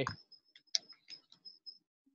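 A quick run of faint, light clicks, about five a second, stopping shortly before the end.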